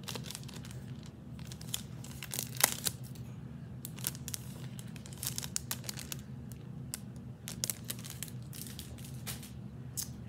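Clear plastic jewelry bag crinkling as it is handled, in a run of irregular crackles, the loudest about two and a half seconds in.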